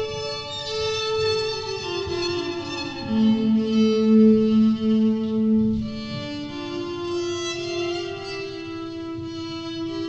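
Electric violin playing slow, sustained bowed notes, several pitches sounding together at once. A lower held note from about three to six and a half seconds in is the loudest.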